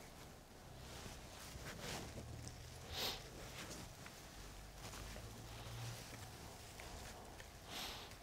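Faint rustling and soft scraping as copper bonsai wire is wound around the branches of a Norway spruce and hands brush through the needles, with a slightly louder rustle about three seconds in and again near the end.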